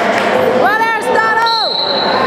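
A spectator's high-pitched shout of encouragement, held for about a second, over steady crowd chatter in a gym. A thin high steady tone comes in near the end.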